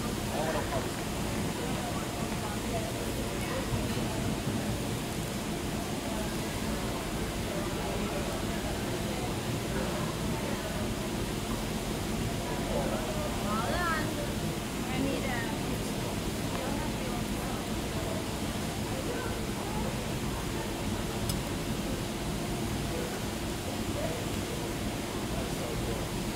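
Steady background hiss of room ambience with faint, indistinct voices in the distance.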